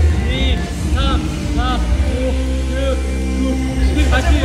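Background music with a heavy, steady bass line and a sung melody that slides up and down.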